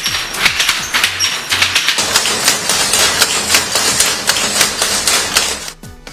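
Weaving loom running with a fast, rattling clatter of many sharp clicks, over a news music bed with low bass notes; the clatter cuts off suddenly near the end.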